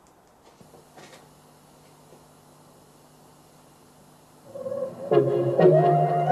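A powered PA speaker is switched on about half a second in and gives a faint steady hum and hiss. From about four and a half seconds, music plays loudly through it, fed from an IMG Stage Line MPX-204E DJ mixer.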